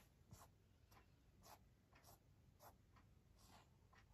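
Faint stylus tip scratching and tapping on a tablet's glass screen in about six short strokes, as someone writes or marks text.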